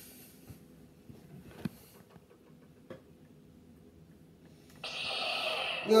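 A few faint clicks, then near the end a Force FX lightsaber hilt's speaker suddenly plays its ignition sound effect, which holds steady as the blade lights red.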